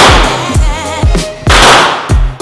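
Hip-hop music with a steady beat, with two loud handgun shots about a second and a half apart, each trailing off in the echo of an indoor range.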